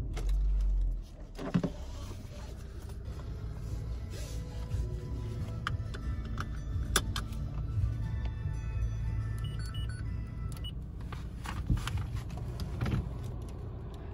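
Low, steady engine and road rumble heard inside the cabin of a VW Golf estate with a 1.4 TSI turbo petrol engine, pulling away and driving slowly. A heavy low thump comes in the first second, and a few sharp clicks follow later.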